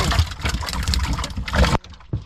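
Water spraying from a boat's live-well aerator onto a pile of live shellcrackers (redear sunfish), over a low steady rumble. The sound changes abruptly near the end.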